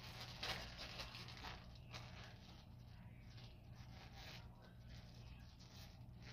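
Faint crinkling and rustling of a thin black plastic garbage bag being handled and pulled open, busiest in the first two seconds.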